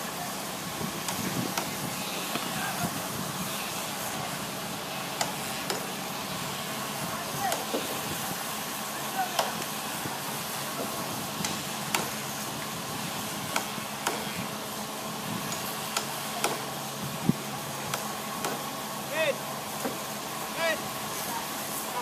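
A motor hums steadily throughout, with scattered sharp knocks and clanks and a few short shouts from workers at a shipyard slipway.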